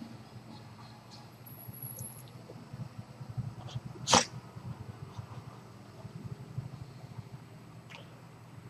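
A man in hypnotic trance breathing audibly through his open mouth, with one short, sharp burst of breath about four seconds in that is the loudest sound.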